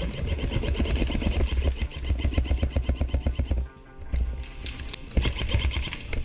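Airsoft electric gun (AEG) firing full-auto, a rapid mechanical chatter of about a dozen shots a second, over background music. The fire breaks off briefly a little past halfway, then resumes.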